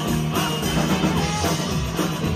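Live rockabilly band playing: upright double bass, electric guitars and drums, with a steady beat of about two strokes a second.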